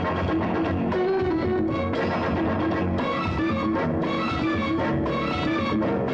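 Instrumental interlude of a 1970s Bollywood film song: plucked strings over a steady beat, with no singing.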